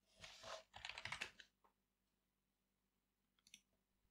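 A quick, quiet run of typing on a computer keyboard in the first second and a half, followed by a few faint clicks near the end.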